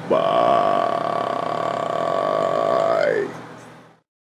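A person's long, loud vocal sound, like a drawn-out burp or groan, starting suddenly, held steady for about three seconds, then bending in pitch and fading away.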